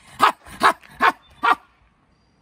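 A man barking like a dog: four short, loud barks about 0.4 s apart. He cannot speak and communicates only in barks and growls.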